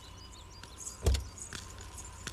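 A single dull thump about a second in, over faint scattered ticks and a quiet steady background.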